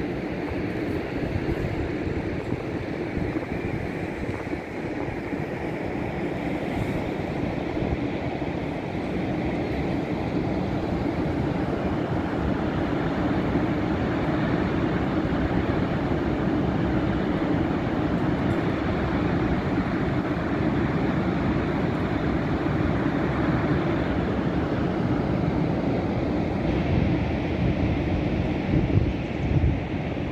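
Steady rushing roar of Niagara Falls' falling water, with wind buffeting the microphone.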